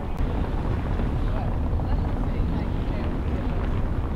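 Steady low rumble of outdoor street noise: traffic and wind buffeting the handheld camera's microphone.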